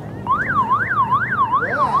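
Emergency vehicle siren in a fast yelp, its pitch rising and falling about three times a second, starting a moment in.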